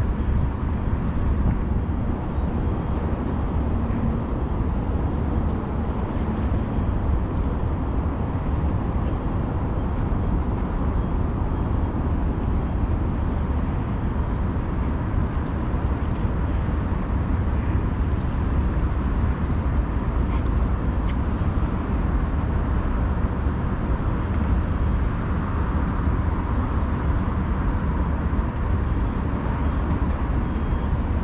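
Steady, loud low rumble of outdoor ambience with no distinct events, apart from a few faint ticks about two-thirds of the way through.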